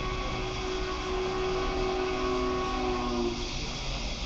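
Train horn sounding a chord of several held notes over a steady low running noise, cutting off a little past three seconds in.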